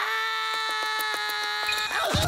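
A cartoon character's long yell held on one steady pitch, with a quick run of regular taps through its middle. It breaks off into a wavering sound near the end.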